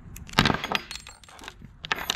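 Small metal parts of an LS rocker arm, its trunnion bearing cups, dropped and clattering onto a wooden workbench: a burst of clinks about a third of a second in, then a few lighter clicks near the end.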